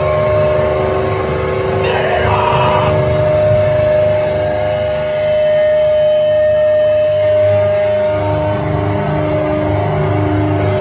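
Amplified electric guitars and bass from a live heavy band in a droning, feedback-laden passage: two steady high tones ring over a thick low rumble, and a pulsing note comes in about eight seconds in.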